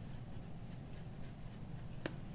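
Faint scratching and rubbing of a marker marking a string wrapped around an inflated rubber balloon, as small scattered ticks over a low steady hum.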